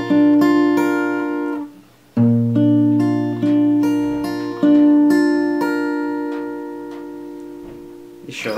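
Steel-string acoustic guitar fingerpicked: the thumb sounds a bass string while the fingers pick an arpeggio on the upper strings. The phrase is cut off about two seconds in, then played again, and its last chord is left to ring and fade away.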